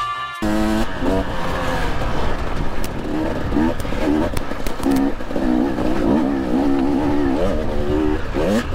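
KTM 250 TPI single-cylinder two-stroke enduro engine revving up and down over and over as the bike picks its way up a rocky trail, starting about half a second in.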